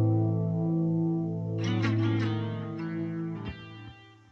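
Electric guitar with the last chord ringing out, a few picked notes about one and a half seconds in, then the notes fading away, with a click about three and a half seconds in.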